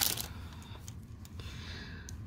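Thin plastic wrapper crinkling as a pen is slid out of its sleeve. The crinkle is loudest at the very start, then dies down to faint rustles and a few soft ticks of handling.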